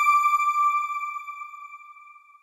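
A single bell-like chime tone ringing out and slowly fading away, the sound sting of a news broadcaster's closing logo card.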